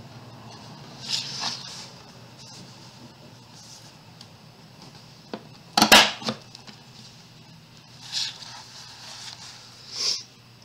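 Cardstock being slid and a plastic scoring tool drawn along the groove of a plastic punchboard: short scraping swishes about a second in and again near the end, with one sharp knock, the loudest sound, about six seconds in.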